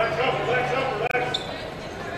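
Basketball dribbled on a hardwood gym floor, with players' voices calling out on the court.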